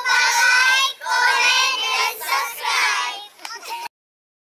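A group of high-school students calling out together in unison, in Indonesian, in a few phrases with a short break about a second in. The voices cut off suddenly just before the end.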